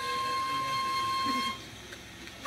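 Wooden flute held upright, sounding one steady held note with a clear, pure tone that stops about one and a half seconds in, followed by a brief quiet gap.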